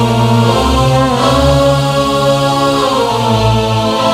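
Live Arabic band playing an instrumental passage with a violin: a held melody over bass notes that change about once a second, with no singing.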